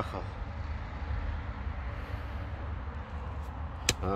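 Spade digging into wet, clayey soil over a steady low rumble, with one sharp click near the end.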